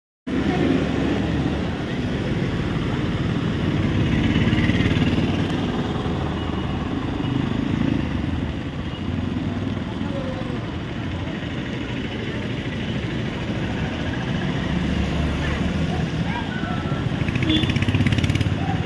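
Road traffic going by on a wet road: a bus passes at the start, then a continuous low engine rumble, and a motorcycle passes near the end. Indistinct voices are mixed in.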